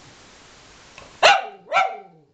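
Cavalier King Charles spaniel barking twice in quick succession, about half a second apart, starting just over a second in: angry barks, as the owner reads them.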